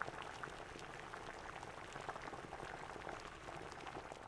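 Faint, even crackling patter of many tiny clicks.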